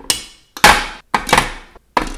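Lipstick tubes set down one after another into the slots of a clear acrylic lipstick organizer: about four sharp plastic clacks, roughly two-thirds of a second apart.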